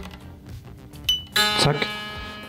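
An electric guitar string on a Schecter Blackjack SLS twangs and rings out, slowly fading, as it snaps into its slot in the nut about halfway through.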